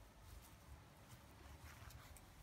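Near silence: faint outdoor background with a few light ticks.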